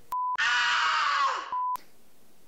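An edited-in sound: a short high beep, then about a second of a strained, scream-like voice whose pitch drops at the end, then another short beep.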